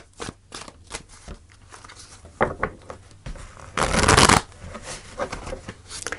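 A tarot deck being shuffled by hand, with a run of soft, short card flicks and one louder rush of cards sliding against each other about four seconds in.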